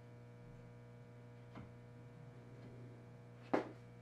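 Small carving knife paring slivers off hard wood: a faint short snick about a second and a half in and a sharper, louder one near the end. A steady electrical hum runs underneath.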